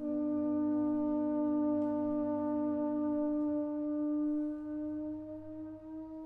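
Contemporary chamber music: a baroque alto trombone (sackbut) holding a long, steady note against a second sustained tone just below it. The lower tone stops about three and a half seconds in, and the held note grows softer near the end.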